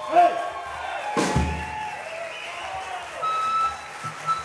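Live rock band on stage with the singer's voice over the PA, and a single drum-and-cymbal hit about a second in. A thin held note, likely from the keyboard, sounds near the end.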